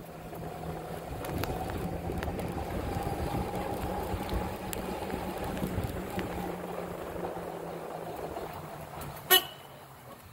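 A golf cart driving along a warehouse's concrete floor, a steady hum with a whine in it. It gets louder about a second in and eases off in the second half as the cart slows. A single sharp knock comes near the end.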